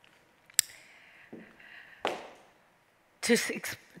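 A woman's pause in speaking, close on a headset microphone: a sharp mouth click, a breath about two seconds in, then her voice starting again near the end.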